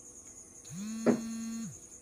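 A single drawn-out call held at one steady pitch for about a second. It glides up at the start and drops away at the end, with a short click partway through.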